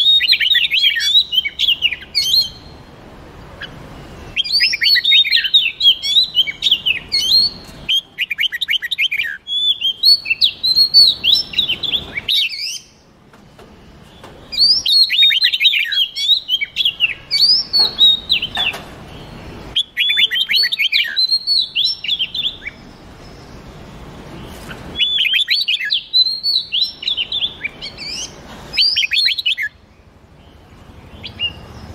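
Red-whiskered bulbul and Oriental magpie-robin singing: about six bursts of rapid, varied chirps and whistled notes, each a few seconds long, with short pauses between them.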